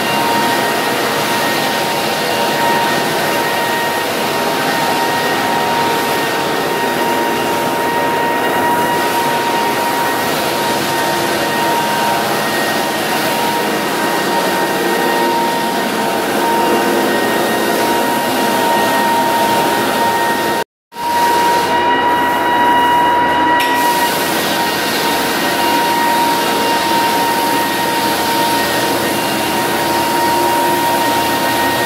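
Electric walk-behind drum floor sander, belt-driven with a dust-collection bag, running steadily as it sands an old solid-wood parquet floor down to bare wood: a loud, even grinding noise with a steady high whine. The sound cuts out completely for a split second about two-thirds of the way through, then carries on.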